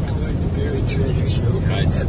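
Road noise inside a moving car's cabin: a steady low rumble from the tyres and engine at highway speed.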